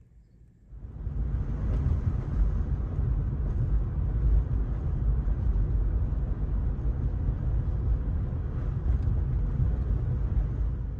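Steady low rumble of a car, heard from inside the cabin, starting about a second in.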